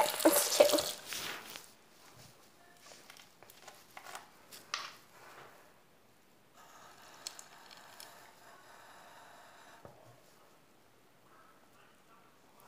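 Bathroom sink tap running and shutting off about a second and a half in, followed by a few faint knocks and, for a few seconds in the middle, a faint stream of water from the tap running into a plastic bottle.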